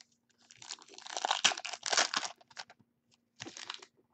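Trading-card pack wrapper crinkling and tearing as the pack is opened: a burst of about two seconds, then a shorter crinkle near the end.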